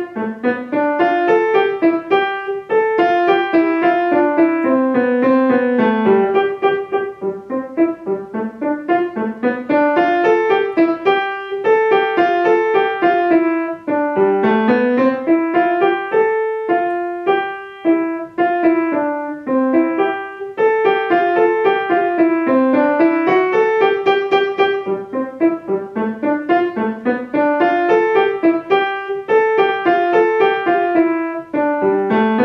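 Grand piano playing a cheerful elementary-level solo that mixes staccato and legato notes, with a few short breaks between detached notes about halfway through.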